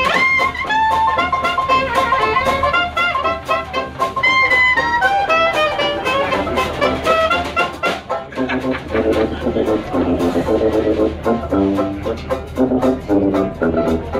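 A live Dixieland jazz band playing: a clarinet carries a high, wavering melody over strummed banjo, drums and sousaphone, then a lower, choppier melody takes over about eight seconds in, with the beat running steadily throughout.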